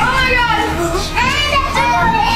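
Several children squealing and shouting in high, excited voices.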